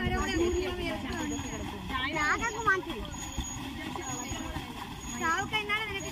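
People's voices talking and calling out, over a low rumble, with a faint high chirp repeating about once a second.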